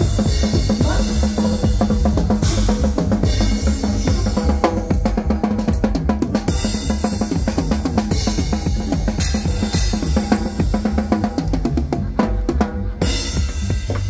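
Live band playing a huapango, with the Tama drum kit's bass drum, snare and cymbals driving a dense, steady beat. Bright cymbal crashes come in repeated bursts.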